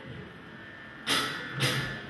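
Live rock band on stage: a brief lull as the previous phrase dies away, then two loud accented hits from the full band, about a second in and half a second later, each ringing on.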